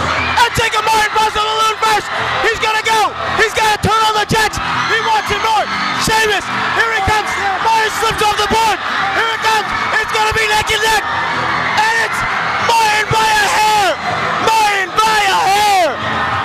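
A large crowd of high-school students yelling, whooping and cheering on a relay race, many voices shouting at once, with frequent sharp claps and knocks among them.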